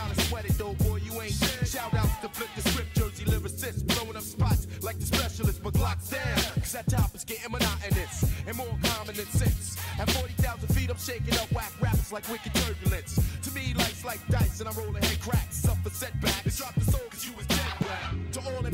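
1990s underground hip hop track: a rapper's verse over a steady drum beat with a deep, heavy bass.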